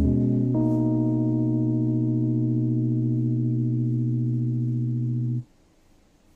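Background music: a sustained chord of steady, bell-like tones that shifts about half a second in, holds, then cuts off abruptly near the end, leaving near silence.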